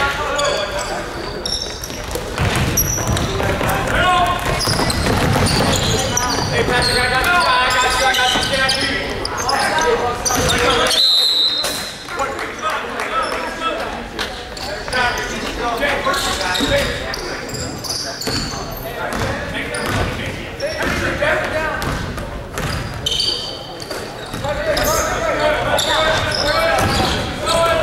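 Basketball game in a large gym: the ball bouncing on the hardwood court in repeated knocks, with voices of players and spectators calling out throughout and a few brief high squeaks.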